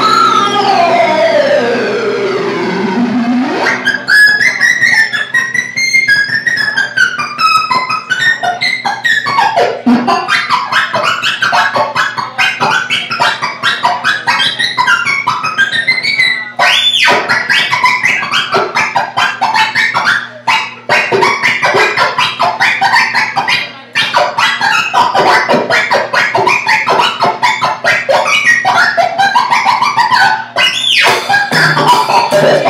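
Live experimental electronic improvisation: synthesizer tones sweep downward in pitch over the first few seconds, then break into a dense stream of warbling, chirping electronic bleeps and rapid clicks over a steady low drone, with electric cello and drums in the mix.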